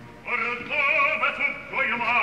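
Operatic baritone entering alone after the orchestra falls away, singing the opening phrases of a recitative in Italian with a wide, fast vibrato and a bright, edged tone, broken by short pauses between phrases.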